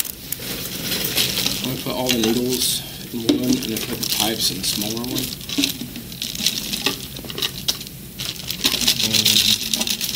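Plastic bags crinkling and syringes and small objects clicking as they are handled on a desk, with short stretches of low mumbled voices in between.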